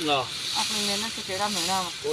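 People talking, over a steady high hiss.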